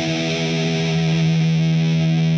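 Electric guitar through a distorted amplifier, holding one sustained note that rings on steadily and grows slightly louder about a second in.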